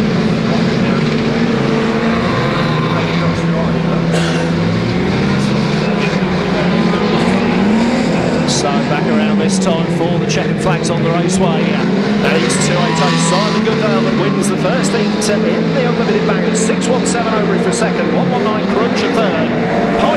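Engines of several banger racing cars running and revving as they race round the oval, their pitch rising and falling as they lap. From about eight seconds in, a scatter of sharp clicks and knocks sounds over the engines.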